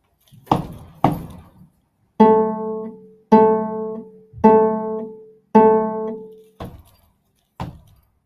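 Cello plucked pizzicato: four ringing notes of the same pitch, one a second, each dying away. A couple of short dry knocks come before them and a couple more near the end.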